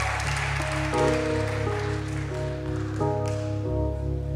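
Keyboards play a slow intro, sustained chords changing every second or so over a held low bass note. Applause dies away in the first second.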